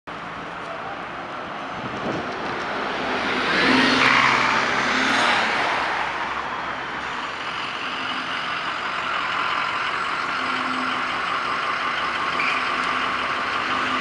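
City street traffic: buses and cars driving past at an intersection, swelling to the loudest pass-by about four seconds in, then a steady hum of engines and tyres.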